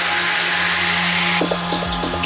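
Psytrance track: a rising white-noise sweep over a steady low drone builds up, then the kick drum and rolling bassline drop in about one and a half seconds in.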